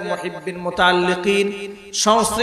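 A man's amplified voice intoning a dua in a chanting style, holding long, nearly level notes and trailing off near the end.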